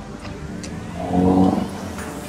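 A motor vehicle's engine passing in city traffic, swelling about a second in and then fading.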